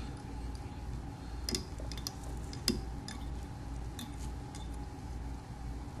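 Faint scattered clicks and ticks of hands handling a thread bobbin and a clump of deer body hair at a fly-tying vise, over a steady low hum.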